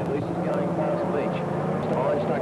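Engines of fender-bender race cars running as they lap the track, a steady low drone with the pitch wavering as they rev.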